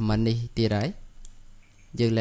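Speech for about the first second, then a couple of faint computer mouse clicks.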